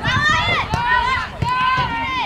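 High-pitched voices yelling and calling out across a soccer pitch in short bursts, with a couple of sharp thuds about three quarters of a second and a second and a half in.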